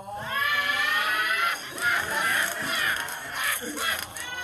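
A voice wailing in long, high, drawn-out notes that rise in pitch at the start, loud and strained.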